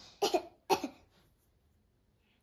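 A child coughing twice in quick succession, two short coughs within the first second.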